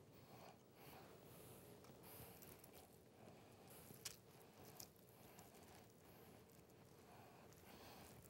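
Near silence, with faint soft handling sounds of hands packing raw ground meat and crumbly cornbread stuffing, and a small click about four seconds in.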